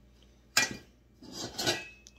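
Metal chainsaw parts clattering on a workbench as they are set down and picked up: one sharp clank about half a second in, then a jumble of ringing metallic clinks.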